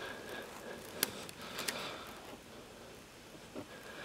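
Faint handling of rubber bands being looped over fingers, with one sharp click about a second in and a few softer ticks later.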